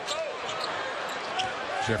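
Arena crowd noise from a live NBA game, with the basketball bouncing on the hardwood court in a few short knocks as a loose ball is stolen and dribbled up the floor.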